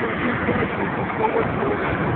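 A steady rushing noise, with faint, indistinct voices in it, high up on an amusement park tower ride.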